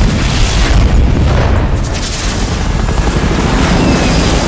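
Loud film sound effects of fireworks launching and exploding in a continuous rumble of booms and crackle, mixed with a helicopter's rotor.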